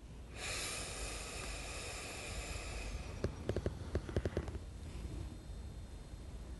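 A long, steady breath through the nose during an alternate-nostril breath-control exercise, lasting about two and a half seconds, followed by several small clicks.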